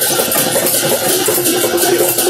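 Kirtan music between sung lines: jingling hand cymbals and percussion keeping a fast, steady rhythm. A low held note joins in about halfway through.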